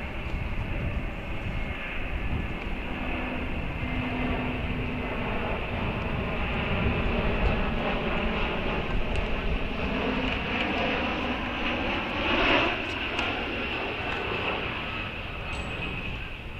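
Steady drone of an aircraft engine passing overhead, a low rumble that swells slowly through the middle, peaks briefly about twelve seconds in and eases off near the end.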